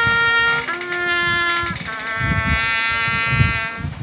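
Marching band brass playing sustained chords: a short chord, a change a little less than a second in, then a long chord held for about two seconds that cuts off just before the end.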